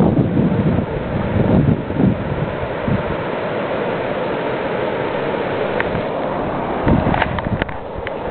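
Wind buffeting the camera's microphone, a steady rushing noise with heavier low gusts in the first couple of seconds. A few small clicks of the camera being handled come near the end.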